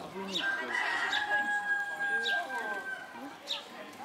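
A long, high call held at one steady pitch for about two and a half seconds, among voices.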